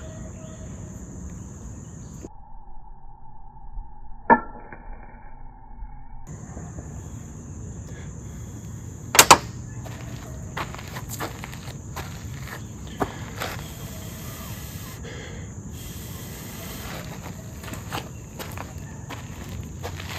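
Flint-and-steel strikes: a chert flake struck against a steel made from a file, giving short sharp scraping clicks, one a few seconds in, the loudest a doubled strike about nine seconds in, then several more over the next few seconds and a couple near the end. A steady high insect buzz runs behind them.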